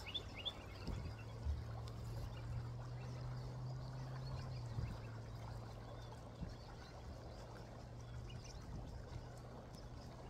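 A faint, steady low motor hum over quiet outdoor background noise, its pitch dropping slightly about five seconds in.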